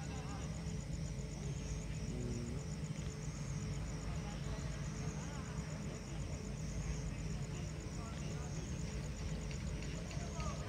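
Sound of a light-and-sound show heard from the crowd: a steady low din with faint scattered voices, a thin steady tone, and a fast, even, high-pitched pulsing throughout.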